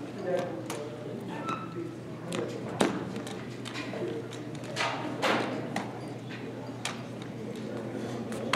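Drill rifle being spun and caught: about ten irregular sharp slaps and knocks of hands striking the rifle, over a faint murmur of voices.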